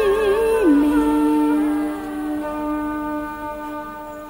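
Cải lương singing: a woman's voice ends a sung phrase on a held note with wide vibrato. The pitch then drops to a lower steady note, held for about three seconds as it fades away.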